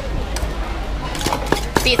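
A pestle knocking in a papaya-salad (som tam) mortar: a few irregular knocks, coming faster in the second half.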